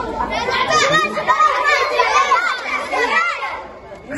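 Many children's voices calling out at once, high and overlapping, dying down near the end.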